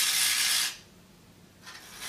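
Small high-frequency sparks hiss between aluminium foil, energised by a nearby Tesla coil, and a hand-held metal needle. There are two bursts of sparking: one in the first moment, another starting near the end.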